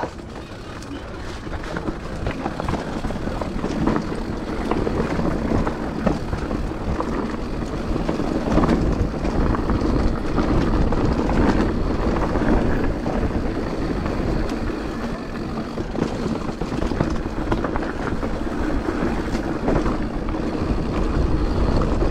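Wind rushing over the microphone and tyres running on a dirt trail as a mountain bike descends, with scattered knocks and rattles from the bike over the bumps. The noise grows louder over the first several seconds as speed builds, then holds.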